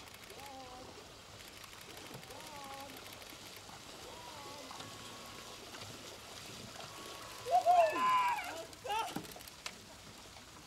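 Shouting voices calling out over a steady outdoor hiss. The calls are faint and scattered at first, then a loud burst of high-pitched shouts comes near the end, typical of spectators cheering on racing kayak crews.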